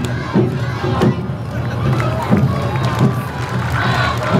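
Awa Odori dancers shouting their calls together, with drums beating underneath.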